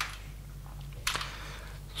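Handling noise of a USB cable and a plastic power bank: a single click about halfway through, then a brief rustle, over a steady low hum.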